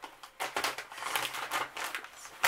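Soft plastic baby-wipes packet crinkling as wipes are pulled out and handled, in a string of irregular rustles.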